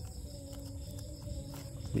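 Quiet room tone: a low steady hum with faint level tones and no distinct click from the connector.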